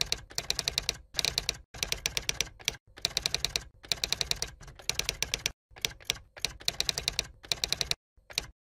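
Typewriter sound effect: rapid key clicks in runs of about half a second to a second, broken by short pauses, as the text types on.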